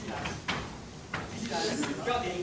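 Karate pad drill: two sharp slaps, about half a second and a second in, of strikes landing on hand-held pads and bare feet on a wooden floor, with a voice calling out near the end.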